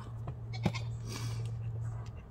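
A plastic blood collection tube and syringe being handled: one sharp light click just over half a second in, and a faint rustling hiss about a second in, over a steady low hum.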